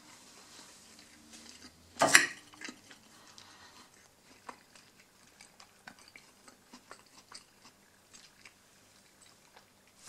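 A metal fork clinks sharply once against a ceramic plate about two seconds in, followed by faint scattered small clicks and taps of cutlery handling.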